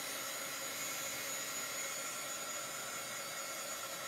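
Small handheld dryer blowing steadily, a constant airy rush with a thin steady whine, drying freshly applied chalk paste on a chalkboard.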